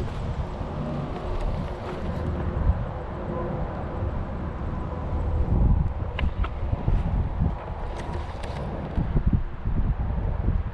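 Wind buffeting the microphone: a rough low rumble that swells and eases with the gusts. A few faint clicks come in the second half.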